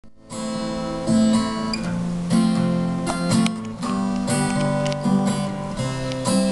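Acoustic guitar played live, strummed chords with a new chord struck about once a second.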